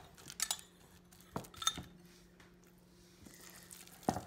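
Hands mixing crumbled plant-based burger mix in a glass bowl, with a few light clinks against the glass in the first half and quieter mixing after, over a faint steady hum.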